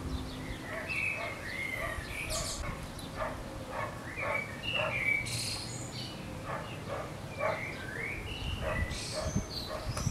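Birds chirping in many short, rising and falling calls, with a dog barking repeatedly, over a steady low background noise.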